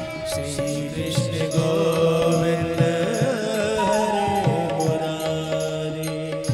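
Devotional bhajan music: a voice sings a chant-like melody over steady held chords and a low drum beat.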